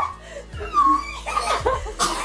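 Girls laughing.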